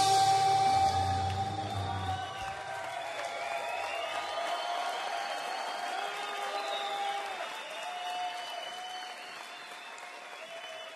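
A live band's closing chord rings out and fades over the first two seconds or so, then the audience applauds and cheers.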